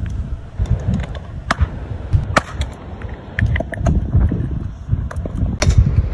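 Low, irregular rumbling buffeting on the microphone, with a few sharp clicks of beach stones knocking together, more of them near the end.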